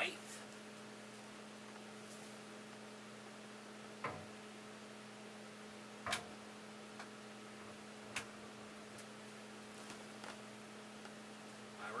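Steady low electrical hum, with a few brief knocks from things being handled on a slatted wooden table, about four, six and eight seconds in.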